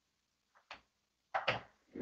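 A light click, then two sharp clicks close together and a duller knock, made by hands handling craft supplies on a work surface.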